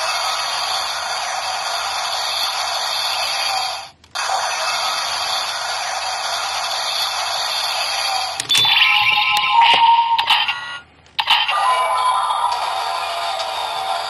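Electronic sound effects and music from the small speaker of a Black Spark Lens (Ultraman Trigger Dark) toy: a sustained synth loop that cuts out briefly about four seconds in and resumes. About eight and a half seconds in, a flurry of effects with clicks as the lens unfolds open, a short break, then another loop.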